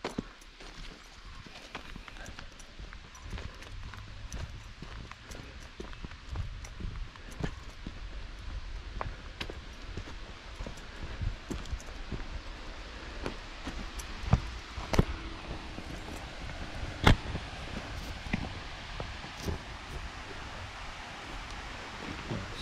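Footsteps along a dirt forest trail: irregular crunches and scuffs, with a few sharper snaps or knocks in the second half, over a low rumble and a steady faint hiss.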